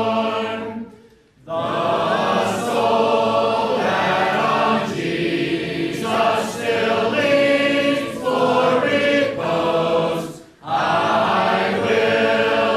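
Church congregation singing a hymn together, with short breaks between lines about a second in and again near the end.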